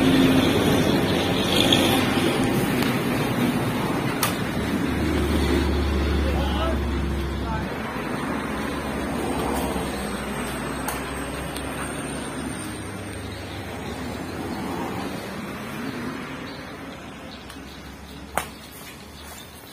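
Talking voices over a steady background, with the low rumble of a road vehicle going by, strongest from about five to eight seconds in. A few sharp smacks of a racket on a shuttlecock stand out.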